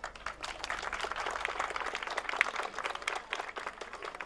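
Crowd applauding: a dense patter of many hands clapping, easing off a little near the end.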